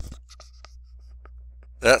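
Faint scattered clicks and light scratches, a few each second, over a low steady hum.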